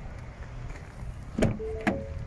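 Ford Fiesta driver's door being opened: a sharp latch click about one and a half seconds in, then a second click as the door swings open, with a short steady tone sounding alongside.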